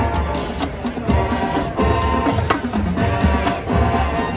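A high school marching band playing live on the field: brass and woodwinds hold sustained chords over drumline and bass-drum hits, with front-ensemble percussion.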